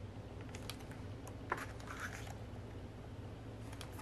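Glossy photobook pages handled and turned by hand: a few soft paper rustles and small clicks, the sharpest about one and a half seconds in.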